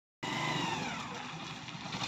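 2017 Hero MotoCorp Glamour 125 motorcycle's single-cylinder four-stroke engine running as the bike rolls up and slows, its pitch falling steadily as it decelerates.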